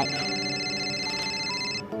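Mobile phone ringing with a steady, high ringtone that stops near the end, over soft background music.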